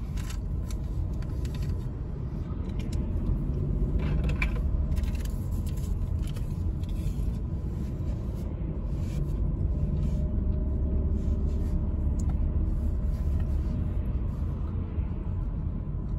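Steady low rumble of a car's engine and tyres, heard from inside the cabin while driving slowly in queued traffic.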